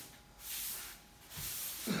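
A broom sweeping the floor: three short, separate swishes of the bristles, each under half a second long.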